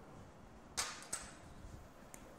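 Two brief, faint scuffs a third of a second apart, a little under a second in, over quiet room tone, from a person moving at a blackboard.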